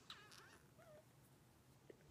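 Near silence: quiet room tone, with a few faint, brief squeaky glides in the first second.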